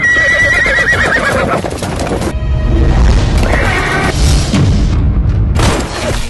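Action-film soundtrack: a horse whinnying over loud dramatic music with a heavy low rumble.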